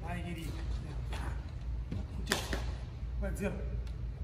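Karate kata movements: one sharp snap about two seconds in, the uniform cracking on a technique, with softer movement sounds and quiet speech around it.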